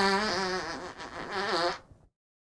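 A long, pitched fart starting suddenly and wavering in pitch for nearly two seconds. It dips briefly about a second in, swells again, then trails off.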